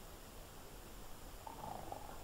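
Faint room tone of an old sermon recording: steady hiss and low hum, with a faint brief murmur about one and a half seconds in.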